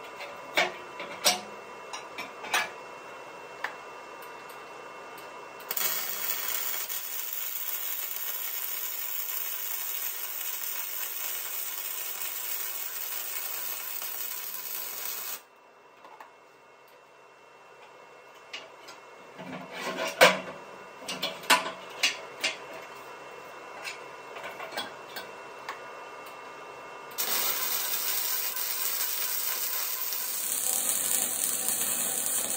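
MIG welder running .035 wire on steel plate: two stretches of steady arc hiss and crackle, the first for about ten seconds from about six seconds in, the second starting near the end. Between them and at the start come sharp taps, knocks and scraping of hand tools on the steel.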